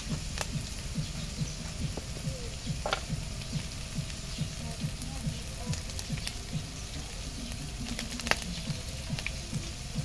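Minced meat, garlic and onion frying in oil in a steel wok, sizzling steadily with a few sharp pops scattered through it.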